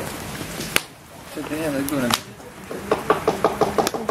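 A person's voice, with two sharp knocks about a second and a half apart and rapid clicky sounds mixed with voice near the end.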